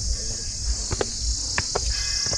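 Footsteps climbing stone steps: several sharp taps and scuffs about a second in and again near the end. Under them runs a steady high-pitched hiss and a low rumble.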